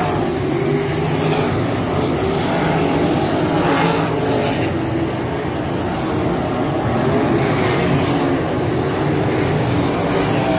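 Several 305 sprint cars' V8 engines running hard at racing speed on a dirt oval, with cars passing close by one after another so the engine pitch rises and falls.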